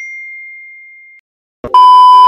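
A single bright ding sound effect that rings and fades away over about a second. After a brief silence, a loud steady test-pattern beep starts near the end and holds.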